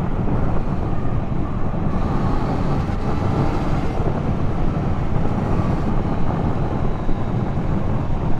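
Yamaha XSR900 motorcycle being ridden at road speed: its three-cylinder engine runs steadily under a constant rush of wind and road noise.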